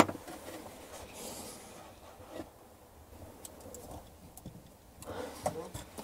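Quiet handling of electrical cable and a screwdriver at the charger terminals: one sharp click at the start, then faint scattered ticks and rustling.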